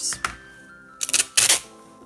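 Paper packing tape being pulled off its roll in a few short, quick rips about a second in, over faint background music.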